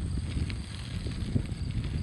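Low, irregular rumble of wind and handling noise on a handheld phone's microphone, with a few faint clicks.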